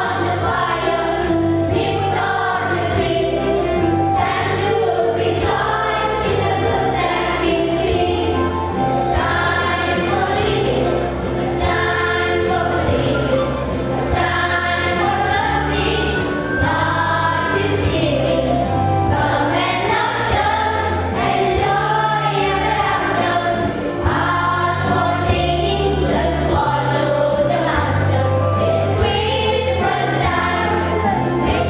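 Children's choir singing in unison into microphones over an accompaniment with a steady, stepping bass line.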